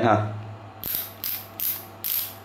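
Ratchet of an Anex stubby ratcheting screwdriver clicking as the handle is worked back and forth. It comes as three quick runs of clicks in the second half.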